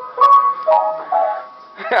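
Upright piano keys pressed by a toddler: three notes or small clusters ring out one after another in the first second and a half, the first the loudest, then a short laugh near the end.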